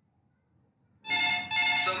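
A phone ringtone, an electronic tune of steady notes, starts suddenly about a second in after near silence.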